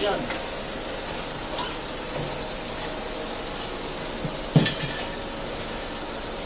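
35 mm film projector running with a steady whirring hiss and a faint steady hum, with one sharp knock about four and a half seconds in.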